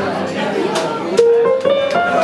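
Live jazz band playing, with piano and plucked double bass. In the second half a melody climbs in short held steps.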